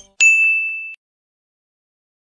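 A single bell-like ding sound effect, struck a moment in and ringing on one high tone for under a second before cutting off abruptly.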